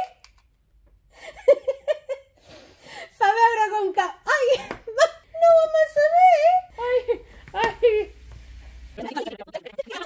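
Women's voices giggling and laughing, mixed with bits of unclear speech, starting about a second in after a brief hush.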